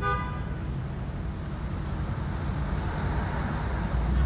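Street traffic: a brief car horn toot at the very start, then a steady low rumble of passing vehicles.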